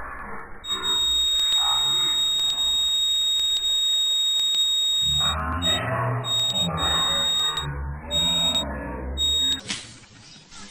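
A steady high-pitched electronic tone, alarm- or buzzer-like, over muffled sound from a television playing a cartoon. The tone breaks up into short pieces in the second half and stops just before the end, while the television sound beneath grows fuller.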